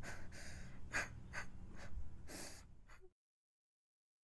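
A young woman crying: a run of short, sharp gasping breaths between sobs, about seven in three seconds. Then the sound cuts to dead silence.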